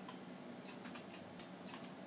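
A few faint, widely spaced clicks of computer keyboard keys over a low, steady room hum.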